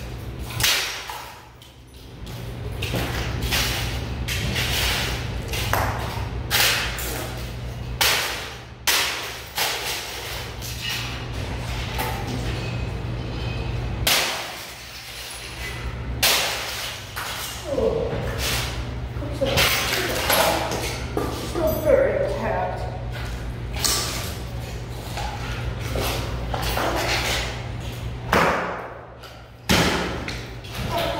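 A sledgehammer repeatedly smashing plastic electronics on a wooden block, sharp crashing impacts about every second or two with cracking plastic and scattering debris, over a steady low hum.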